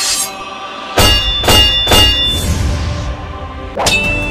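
Cinematic logo-intro music with sound effects: three heavy hits about half a second apart, starting about a second in, each leaving a ringing metallic tone, then a rising whoosh into another hit at the end.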